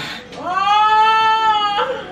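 A woman in labour crying out: one long, high-pitched cry that glides up in pitch, holds steady for over a second and breaks off sharply.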